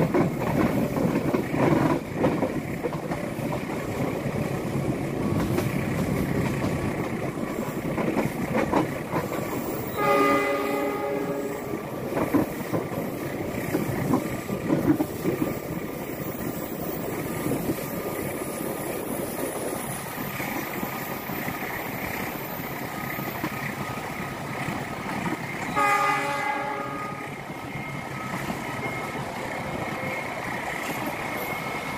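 Argo Bromo Anggrek express train running at speed, a steady rumble of wheels on rail with occasional clicks, while the locomotive's horn sounds two blasts of about a second and a half: one about ten seconds in and one near the end.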